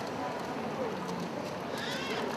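Airport terminal hall ambience: indistinct voices of people talking against a steady background hum, with a few scattered light taps.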